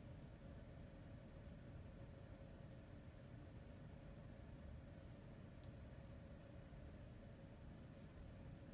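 Near silence: quiet room tone with a faint steady hum, and one faint click after about five and a half seconds.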